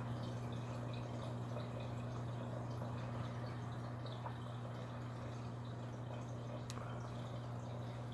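Steady low hum of running reef-aquarium pumps, with faint trickling and dripping of circulating water.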